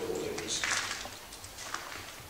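A bird cooing briefly at the start, then about a second of scuffing and rustling.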